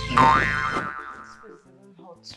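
A cartoon-style comedy sound effect: a loud tone that slides up in pitch and fades within about a second. Soft background music follows.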